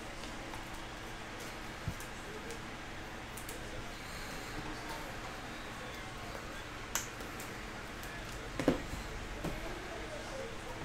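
Trading cards and a cardboard card box handled by hand: a few soft taps and knocks, one about two seconds in, one around seven seconds and the loudest just before the end, over a steady low room hum.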